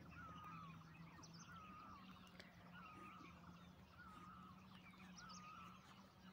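Faint bird calls: one short chirp repeating about once a second, over a low steady hum.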